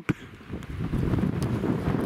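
Wind buffeting the microphone in gusts, building up after a brief lull about half a second in.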